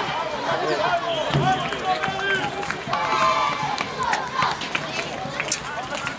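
Many overlapping voices of children and spectators calling and chatting at a youth football game, with no single clear speaker.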